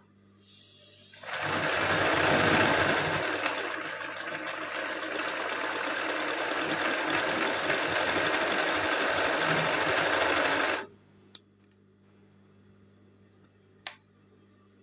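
Zigzag sewing machine running at speed, stitching dense satin stitch to fill a small teardrop motif. It starts about a second in, runs steadily for about nine seconds and stops abruptly.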